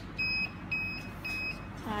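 Control unit of a D 669 electric heating slimming blanket giving three short, high beeps about half a second apart as it powers on after its rear power switch is pressed.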